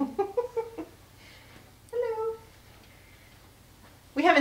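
A domestic cat meowing, with one clear meow about two seconds in.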